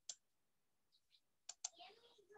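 A few sharp clicks on a computer against near silence: one just after the start, then two in quick succession about a second and a half in. They come as the pen annotations on the screen are being cleared.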